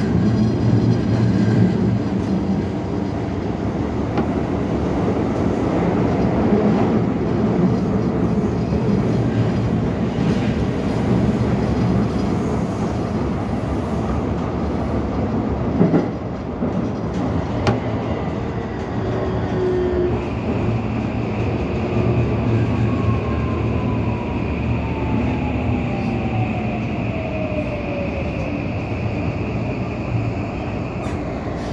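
Toei 5500-series subway train running through a tunnel with a steady low rumble. About halfway there is a sharp knock as it enters the station. Its electric motors then whine down in pitch under a steady high tone as it brakes toward its stop at the platform.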